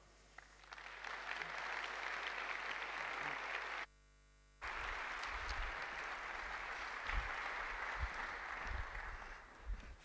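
Audience applauding in a large hall. The clapping builds over the first second, breaks off briefly about four seconds in, then carries on and fades near the end.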